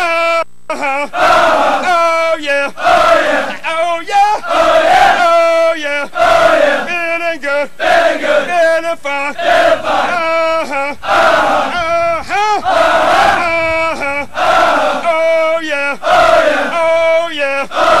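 A group of male recruits shouting a U.S. Marine Corps cadence chant in unison, in short repeated call-and-response lines.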